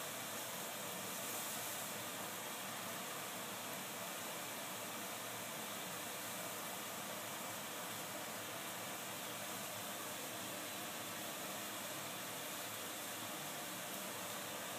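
Steady, even hiss of background noise, with no distinct sounds standing out.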